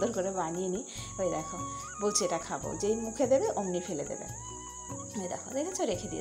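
Crickets trilling steadily in the background, under children's voices that come and go.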